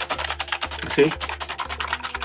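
Fast typing on a computer keyboard: a rapid, continuous run of keystrokes, about ten a second.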